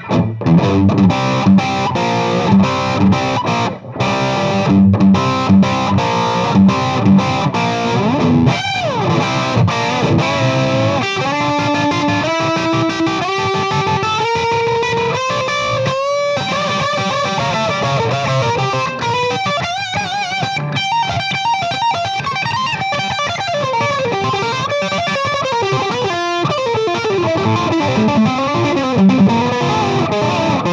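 Gibson Custom Shop 1959 Flying V reissue electric guitar with humbucking pickups, played through an amplifier as a lead solo. About eight seconds in a note bends down, then a run of single notes climbs step by step, and the rest is held notes with wide bends and vibrato.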